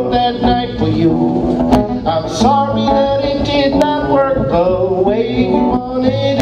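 Live acoustic guitar strummed under a man's singing, with a second guitar playing along, in a country-tinged rock song.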